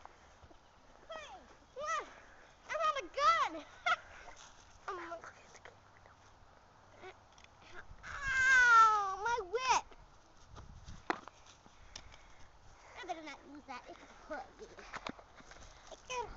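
A boy's high-pitched wordless vocal outbursts, the loudest a drawn-out scream of about two seconds, wavering and falling in pitch, about eight seconds in.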